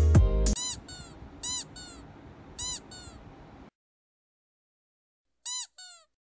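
Music cuts off abruptly, then short, high, meow-like calls come in quick pairs, three times. After a silence there is one more pair near the end.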